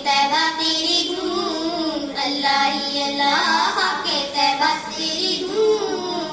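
A girl singing an Urdu naat (devotional song in praise of the Prophet) unaccompanied, in a melodic line of held and gliding notes.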